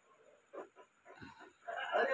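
Mostly quiet, with a few soft mouth and spoon sounds as a child eats from a spoon, then a voice starts up near the end.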